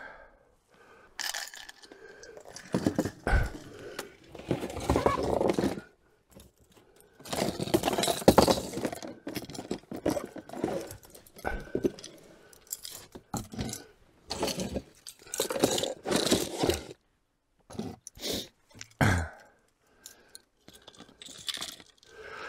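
Fishing lures and tackle being handled: irregular rustling, scraping and small clicks as large soft-plastic pike baits and their rigged hooks are picked up and laid out, in short bursts with pauses between.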